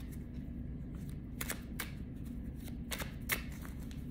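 A deck of tarot cards being shuffled by hand, with a few crisp card snaps from about a second and a half in, over a low steady hum.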